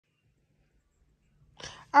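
Near silence, then a short breathy sound about a second and a half in, just before a woman's voice starts speaking at the very end.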